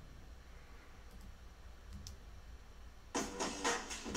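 Quiet room tone with a low hum and a couple of faint computer mouse clicks as an audio file is selected in a file dialog. Shortly before the end comes a brief, louder, choppy noise.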